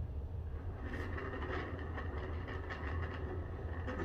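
Lazy susan turntable spinning under a heavy round canvas, giving a steady rolling rumble.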